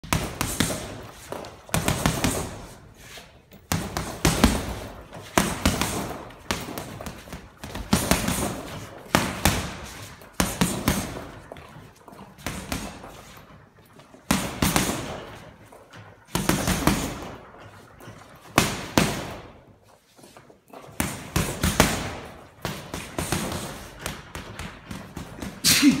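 Boxing gloves punching a heavy bag: quick combinations of several hard thuds each, with short pauses between flurries every second or two.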